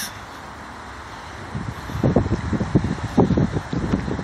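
Wind buffeting a phone microphone outdoors: irregular low rumbling gusts that set in about a second and a half in, over a steady background hiss.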